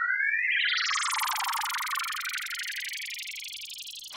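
Synthesized cartoon sound effect of a ball thrown high into the sky: a rising whistle that, about half a second in, spreads into a shimmering wash and slowly fades away.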